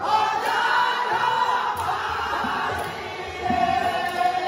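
A group of men singing a devotional song together into microphones, many voices blended in unison.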